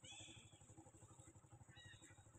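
Two faint high-pitched squeaking cries from an infant long-tailed macaque being handled by a young macaque: a short call right at the start and a briefer one near the end.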